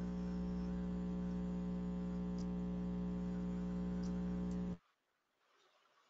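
Steady electrical hum with many overtones on a conference-call audio line, the background noise the participants complained of and suspect comes from the system, cutting off suddenly near the end.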